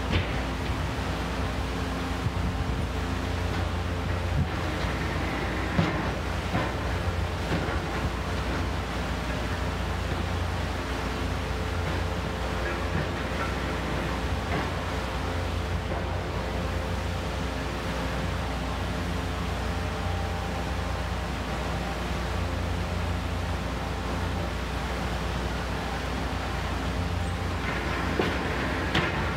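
High-reach demolition excavator running steadily, its diesel engine and hydraulics giving a low, even drone, with a few short knocks from the attachment working the building's frame.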